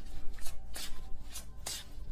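Tarot deck being shuffled by hand: a quick string of short card flutters and rustles.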